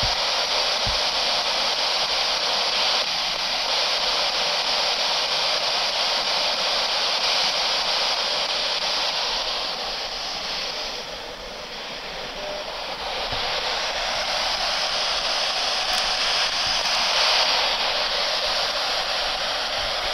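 Spirit box radio (P-SB11) scanning, giving a steady loud hiss of radio static that dips briefly about halfway through.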